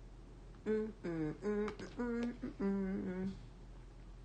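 A woman humming a string of about six short closed-mouth "mm" notes at shifting pitches, sounds of relish while she eats soup.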